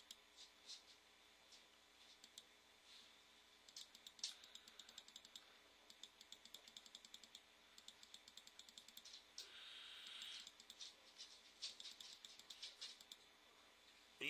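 Faint clicking of computer keys, a run of quick light keystrokes through most of the stretch, with a brief soft hiss about ten seconds in.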